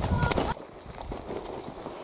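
Horse's hooves walking on a muddy, stony farm track, a few soft irregular hoofbeats. A low rumble fills the first half second.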